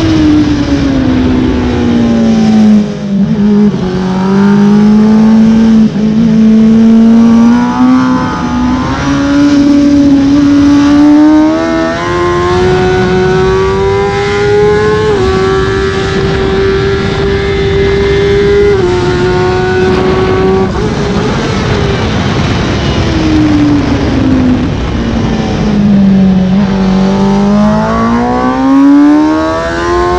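Kawasaki ZX-10R's inline-four engine on a fast track lap, heard from on board. Its pitch drops under braking at the start, climbs in small steps under hard acceleration to a steady high note mid-way, drops again when braking for a corner and rises once more near the end.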